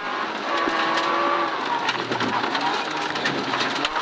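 Rally car engine heard from inside the cabin, running hard at high revs. Its note breaks and drops about two seconds in, then carries on lower.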